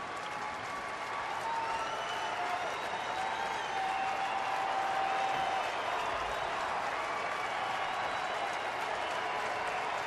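Ballpark crowd applauding and cheering, with scattered voices carrying above the clapping, swelling slightly through the middle, as fans urge on a two-strike pitch in the ninth inning.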